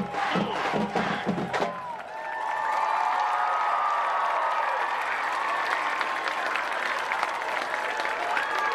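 High school marching band with brass and drums playing the closing bars of its show, cutting off about two seconds in. The stadium crowd then cheers and applauds.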